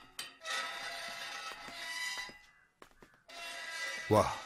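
Background film score of sustained, held chords, fading away about two and a half seconds in and swelling back in near the end.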